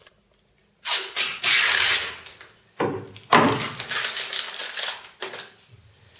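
Protective plastic film being peeled off the front of an acrylic block: loud crackling in two long pulls, the first about a second in and the second starting near the middle and tailing off near the end.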